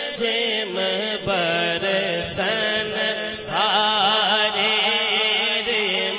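A naat being sung, an Islamic devotional song in praise of the Prophet. A voice holds long melodic notes, with a run of wavering, ornamented notes a little past the middle.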